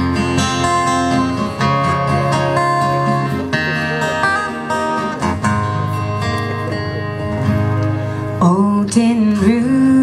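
Two acoustic guitars playing the intro of a country song live on stage, strummed chords with picked melody notes. A singing voice comes in near the end.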